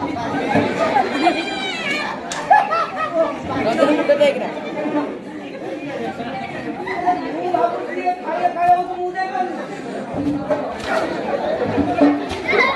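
Several voices talking over one another: loud, overlapping speech and chatter.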